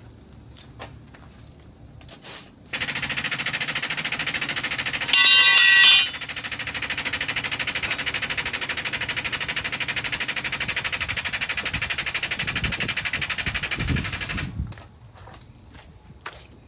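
A loud, rapid mechanical rattle that starts suddenly about three seconds in and stops near the end, louder and with a whine for about a second early on.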